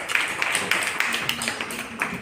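A class of children clapping their hands together, a quick, uneven patter of many claps that thins out near the end.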